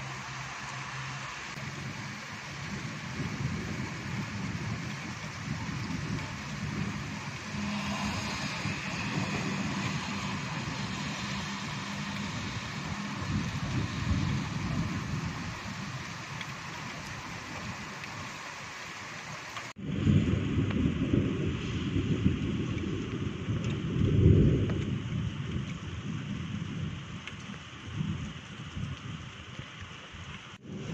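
Thunderstorm: steady rain noise under a continuous low rumble of thunder. After an abrupt change about two-thirds in, the rumble grows louder and peaks a few seconds later.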